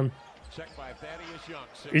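Faint game-broadcast audio of a basketball being dribbled on a hardwood court, with low speech underneath.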